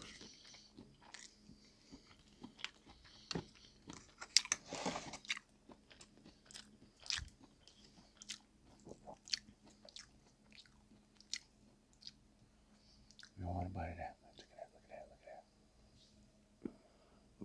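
Close-miked chewing and mouth clicks of a person eating spaghetti in meat sauce, with small fork clicks against a plastic container. A short burst of voice about thirteen seconds in.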